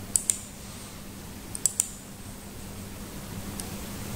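Sharp clicks of a computer keyboard and mouse being worked: two quick pairs of clicks, then a single faint click near the end, over a low steady hum.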